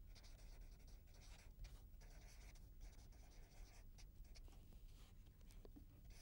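Faint scratching of a felt-tip pen writing on paper, in short irregular strokes.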